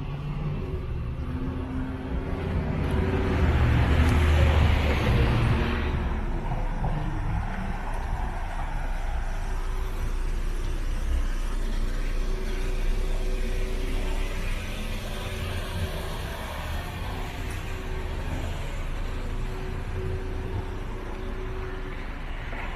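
Street traffic: a car drives past, loudest about four to five seconds in, then a steady background of traffic with a low hum.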